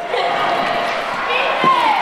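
Several voices chattering and calling over one another in a large, echoing hall, with a short thud about one and a half seconds in.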